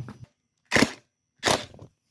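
Cordless driver run in two short bursts, about two-thirds of a second apart, tightening the T27 screw that holds the guard onto a Stihl string trimmer's gearbox.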